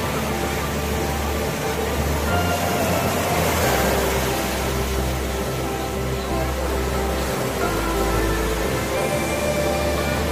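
Background music: held tones over a bass line that changes note every second or so.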